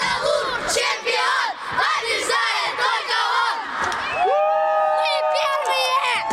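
A group of boys shouting and chanting together, celebrating their team's win. About four seconds in, they break into a long, drawn-out cheer held on one note.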